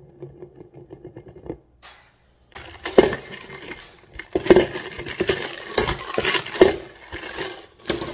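A foam fountain-drink cup being spun and batted around by hand on a granite countertop: faint rapid clicking at first, then after a short pause a steady scraping rustle broken by several sharp knocks. The cup tips over onto its side near the end.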